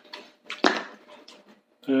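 A small food tub being handled: one sharp click about two-thirds of a second in, with a few faint ticks and rustles after it.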